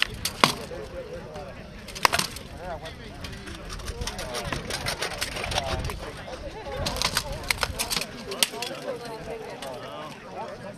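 Rattan swords striking shields and armour in armoured combat: sharp wooden cracks, two single blows early and a quick flurry of blows about seven to eight and a half seconds in, under steady crowd chatter.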